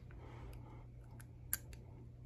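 A few faint, sharp clicks, the loudest about one and a half seconds in, as a removable snap-on veneer is pressed into place over the lower teeth, over a steady low hum.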